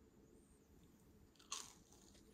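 One crisp, crunchy bite into a breaded fried snack cutlet about one and a half seconds in, over faint room tone.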